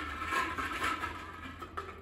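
Small plastic draw balls rattling and clattering against each other and a glass bowl as a hand stirs through them, dying away near the end.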